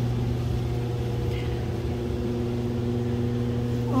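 A steady low hum with a few higher constant tones over it, unchanging throughout, like a motor or electrical equipment running.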